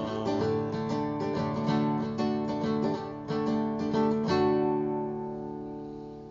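Taylor NS24ce nylon-string acoustic guitar playing the closing chords of the song, then a final chord about four seconds in that rings out and fades away.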